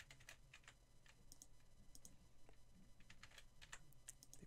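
Faint, irregular clicks of a computer keyboard and mouse, over a low steady hum.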